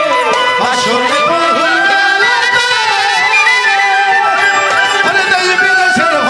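Instrumental interlude of a Bengali baul folk song. A melody instrument plays a line of held notes that waver and step up and down over the band's accompaniment, just after the singer's vocal line ends.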